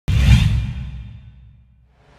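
Intro sound effect for an animated logo: a whoosh over a deep rumble that starts suddenly and fades away over about a second and a half.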